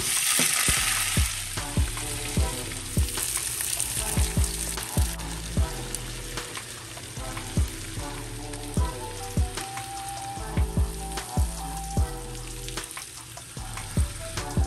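Chicken pieces sizzling as they fry in a pan, the hiss strongest in the first couple of seconds. Background music with a steady beat plays under it.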